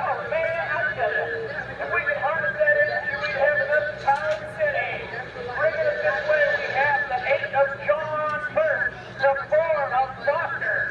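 Loud, continuous, unintelligible talking or shouting voices, thin and narrow-sounding as on an old camcorder tape, over a faint steady low hum.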